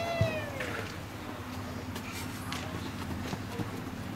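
A child's short, high-pitched call, falling in pitch, right at the start. A quieter stretch follows, with a low steady hum.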